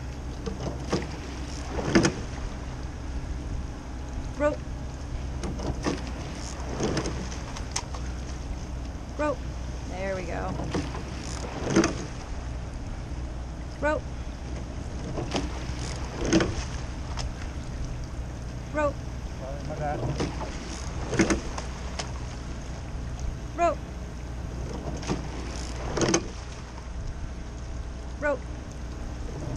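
Sculling boat being rowed at a steady rate: a sharp knock from the oars in their oarlocks about every two and a half seconds, once per stroke, with short squeaks in between. A steady low rumble of water and wind runs underneath.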